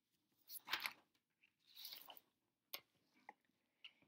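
Near silence, with a soft breath and a few faint clicks.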